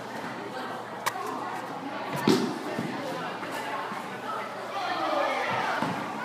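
Many boys' voices chattering and calling out in a large hall, with a sharp knock about a second in and a louder thump a little over two seconds in.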